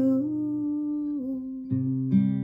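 A woman's voice holds the last sung note of a line, stepping down a little twice, over ringing acoustic guitar. A new guitar strum comes in near the end.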